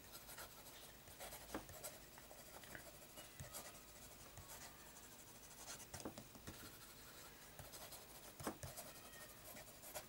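Faint, smooth scratching of a broad 18K gold fountain pen nib gliding over smooth Clairefontaine paper as a line of handwriting is written, with a few faint ticks as the nib lifts and touches down between letters.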